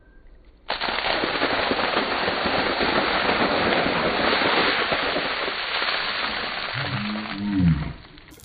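A large bucketful of water pouring down from a balcony and splashing over a man and the paving: a loud, steady rush that starts suddenly about a second in and lasts about seven seconds. Near the end a man's short cry rises and falls.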